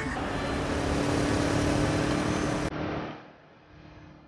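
Road traffic noise with a steady hum under it, breaking off suddenly about three seconds in to quieter street sound.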